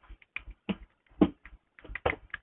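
Irregular clicks and taps of hands handling a small plastic mobile charger and its wires, about a handful in two seconds, the loudest a little past the middle.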